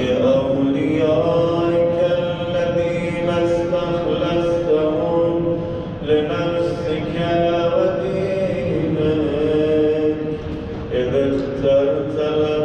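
A male voice chanting an Islamic prayer in long, held notes with slow glides in pitch, one phrase flowing into the next.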